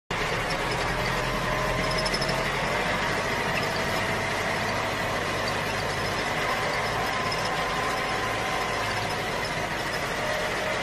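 A plastic toy tractor and its plough pushed by hand through sand: a steady scraping hiss with faint, thin whining tones.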